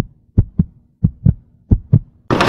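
Heartbeat sound effect: short low double thumps, lub-dub, repeating about three times with near silence between beats.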